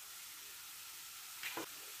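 Faint, steady sizzle of shredded chicken sautéing in a stainless steel pan over a gas flame, with one brief soft sound about a second and a half in.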